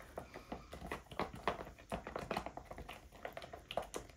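Stirring stick clicking and scraping against the sides and bottom of a plastic tub while acrylic paint is mixed: a steady run of quick, irregular light taps.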